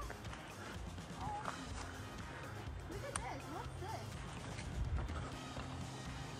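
Faint background music with steady low notes, with a few faint voice-like sounds over it.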